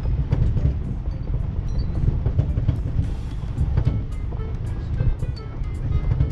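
Car driving over a rough dirt road: a steady low rumble of engine and tyres with frequent small knocks and rattles, with light music playing along with it.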